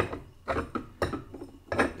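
Metal hand tools working a threaded bushing-press tool on a trailing arm: four short metallic clicks, roughly half a second apart.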